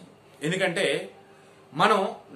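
A man narrating in Telugu, speaking one short phrase, pausing, then starting another near the end.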